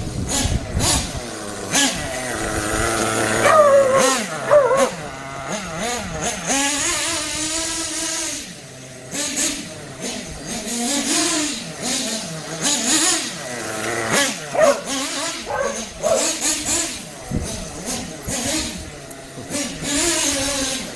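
Kyosho FO-XX GP's small nitro glow engine revving up and down as the RC truck is driven over grass, its pitch rising and falling with the throttle; the engine is on its second tank of fuel, still in break-in.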